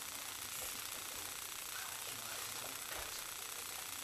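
Quiet room noise in a small room with faint, low voices, and a soft low thump about three seconds in.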